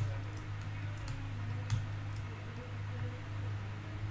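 A few faint, irregular clicks from computer input, over a steady low hum.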